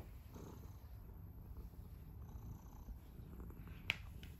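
Domestic cat purring as it is stroked, a faint steady low rumble, with a brief click near the end.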